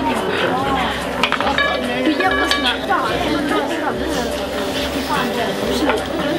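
Children chattering around a roulette table, with light clinks and rattles from the wheel and the plastic chips.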